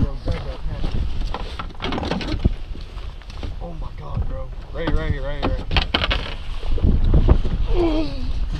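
Wind buffeting the microphone with a constant low rumble, with brief bits of voices and a few sharp clicks and knocks.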